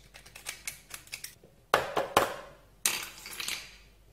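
A knife and pieces of crab claw shell clicking and knocking against a hard work surface as the meat is picked out: light clicks, two sharp knocks about two seconds in, then a short scrape.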